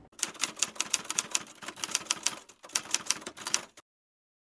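Typewriter keys clacking in a quick, uneven run of strokes, with a short break about two and a half seconds in; the typing stops suddenly just before the end.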